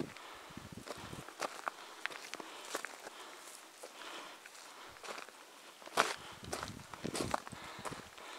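Footsteps of hikers on a rocky track through low scrub: irregular crunching steps with brushing and scuffing, and two louder scuffs about six and seven seconds in.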